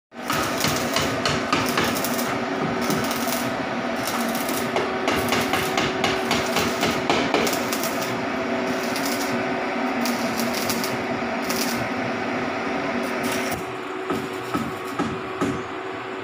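A hand tool working a welded sheet-metal stove: a dense run of scraping and tapping on steel over a steady hum, easing off about three-quarters of the way through, then a few separate knocks.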